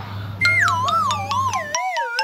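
An edited-in comic sound effect: a warbling tone that slides downward in pitch, starting about half a second in, with a few sharp clicks. Under it, a low steady hum cuts out near the end.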